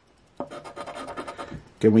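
A large coin scratching the coating off a paper scratch-off lottery ticket: a rapid raspy scraping that starts about half a second in and lasts just over a second. A man's voice starts speaking at the very end.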